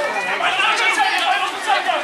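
Several voices shouting and talking over one another: sideline spectators calling out while play is on.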